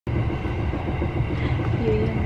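Steady low rumble of a moving Kintetsu limited express train, heard from inside the passenger carriage, with a short voice sound near the end.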